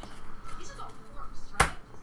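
A single sharp knock about one and a half seconds in: a stack of trading cards set down on the table.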